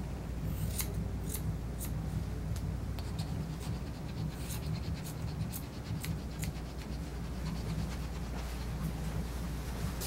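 Grooming shears snipping the hair on a Yorkshire Terrier's face, a series of short, crisp snips about two a second.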